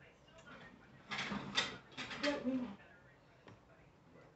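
A man eating a bite of a chicken sandwich: mouth and chewing noises with a short muffled voiced sound through a full mouth, loudest for about two seconds starting about a second in.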